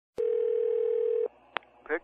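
Telephone line tone heard over a phone call: one steady pitch for about a second that cuts off, followed by a single click as the call is picked up.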